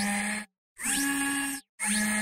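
Three short whirring, hissing mechanical sound-effect bursts with a steady hum and rising pitch glides, separated by brief gaps, accompanying an animated logo sting.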